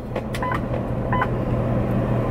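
Steady low drone of a running vehicle heard from inside the cabin, with two brief faint tones about half a second and a second in.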